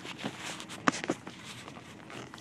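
Handling noise of a phone camera being moved about inside a car: rustling, with a sharp click about a second in and a lighter one just after.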